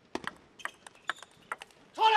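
A fast table tennis rally: sharp, ringing clicks of the celluloid-type ball off rubber-faced bats and the table, about eight in under two seconds. They stop shortly before the end as the point is won with a winning shot.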